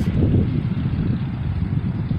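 Wind buffeting the camera's microphone: an uneven, gusty low rumble with no engine tone in it.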